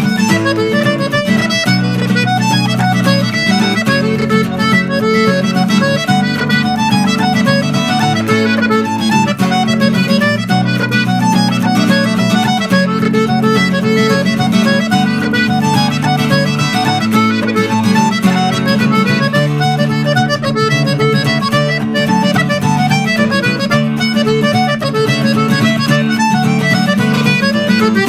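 A traditional Irish tune played live on accordion with strummed acoustic guitar accompaniment, a run of quick melody notes over sustained chords.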